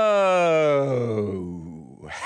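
A man's long drawn-out "heyyy" greeting, one held vocal note that slides slowly down in pitch and fades away near the end.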